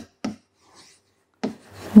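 Marker pen writing on a whiteboard: a few short separate strokes as letters are drawn, the last about one and a half seconds in.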